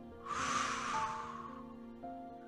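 A man's long breath blown out, starting just after the start and fading away over about a second, over soft background music with held tones.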